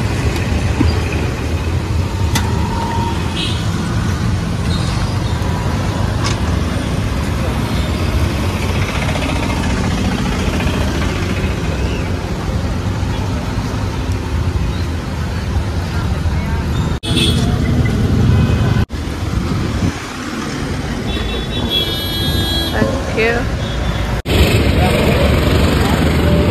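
Small petrol engine running steadily as it belt-drives a roadside juice crusher, with street traffic and voices around it. The sound changes abruptly with cuts about 17, 19 and 24 seconds in.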